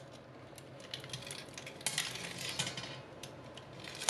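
Faint clinks and rustling as a whole duck is lowered onto a wire rack in a stainless steel roasting pan, with a few sharper clicks about two seconds in.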